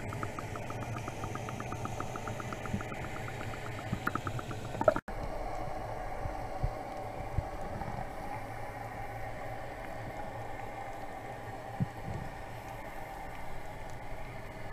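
Muffled underwater sound picked up by an action camera inside its waterproof housing: a steady low rumble and hiss, with a fast, even ticking through the first four seconds or so. The sound drops out for an instant about five seconds in, and a steadier hum carries on after it.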